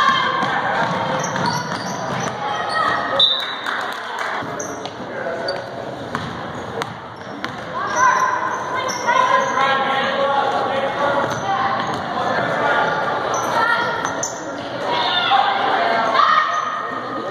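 A basketball bouncing on a hardwood gym floor as it is dribbled, with sharp thuds scattered through, amid shouting and calling voices that echo around the hall.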